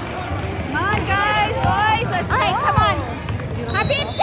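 A basketball dribbled on a hardwood gym floor during a game, with short high squeaks and voices calling out over the hum of the gym.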